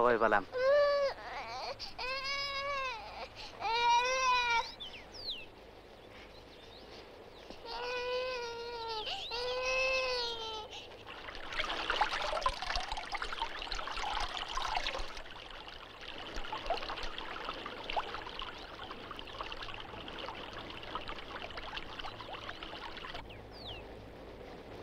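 A small child crying in five wails that rise and fall in pitch, three in the first five seconds and two more around nine to eleven seconds. Then water splashes and pours for about four seconds, trailing off into a softer trickle.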